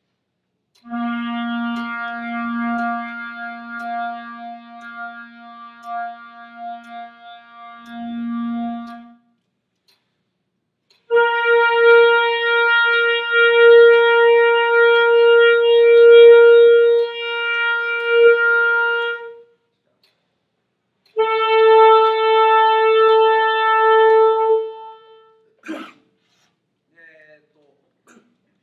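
School wind ensemble playing long held notes together in unison, as a unison-training exercise: three steady sustained tones with about two seconds of silence between them, the first lower and the next two an octave higher.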